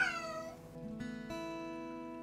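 A brief voice trailing off and falling in pitch right at the start. Then outro music: plucked guitar notes, each starting sharply and left to ring.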